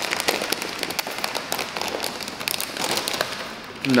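A foil snack bag of tomato chips being torn open and handled, crinkling with a dense run of small crackles that thins out near the end.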